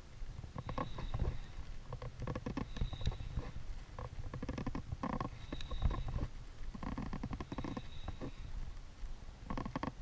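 Spinning reel being cranked to retrieve a lure, its gears giving rattling runs of fine ticks in bursts every couple of seconds, over a steady low rumble on the microphone.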